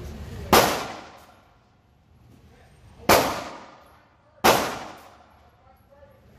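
Three pistol shots, likely 9mm, in an indoor range. The first comes about half a second in, the second about two and a half seconds later, and the third a second and a half after that. Each shot is a sharp crack that echoes off the concrete for about a second.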